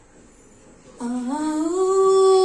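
A woman's voice through a microphone begins a long held note about a second in, gliding up and then holding steady, as she starts to sing unaccompanied.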